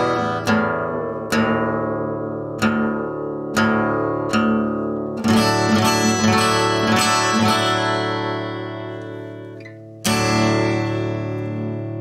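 Solo acoustic guitar: single chords struck about once a second and left to ring, then a short busier picked passage that slowly dies away, and a fresh chord struck about ten seconds in.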